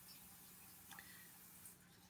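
Near silence: faint room tone with a low steady hum and one faint tick about a second in.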